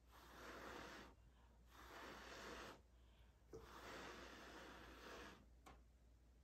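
A person blowing hard through the mouth onto wet acrylic pour paint, to push out and open a bloom. Three long, faint breaths of blowing, each lasting a second or more, with short pauses between them.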